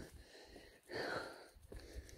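A single breathy exhale close to the microphone, about a second in, lasting about half a second.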